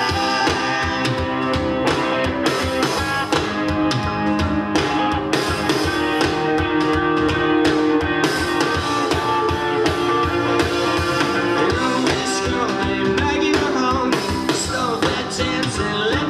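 Live rock band playing a song with guitars, keyboard and drum kit at a steady, loud level.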